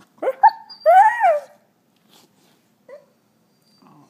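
Dog vocalising: two quick rising yelps, then one longer whining bark that rises and falls, all within the first second and a half. It is a begging call for a toy she can't get to.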